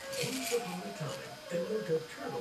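Quiet background music with a distant voice, as from a television or story recording playing in the room.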